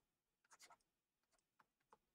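Near silence with a few faint, short scratches and taps of a stylus writing on a tablet screen, a small cluster about half a second in and two more near the end.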